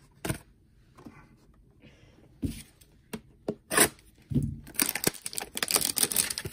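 A cardboard trading-card hanger box being handled and torn open. A few scattered taps and knocks come first, then a dense run of tearing and crinkling from about three-quarters of the way in.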